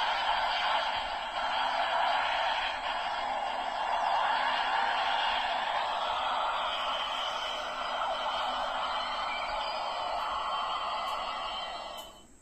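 Ultraman Tiga transformer toy playing a beam-attack sound effect through its small speaker: a long, steady rushing blast that cuts off just before the end.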